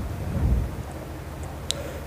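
Low, muffled rumble on the microphone, swelling about half a second in, with a single short click near the end.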